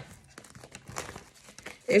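A tarot deck being shuffled by hand: soft, irregular rustling and light clicks of the cards, with one sharper click about a second in.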